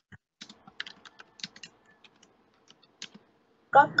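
About a dozen short, faint clicks and ticks at irregular intervals over a quiet line, then a woman's voice speaks one word near the end.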